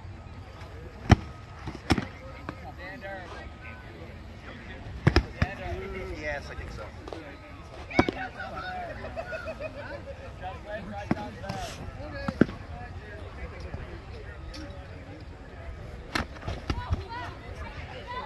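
Foam-padded LARP swords striking shields and each other in sparring: a series of sharp smacks at irregular intervals, with voices talking in the background.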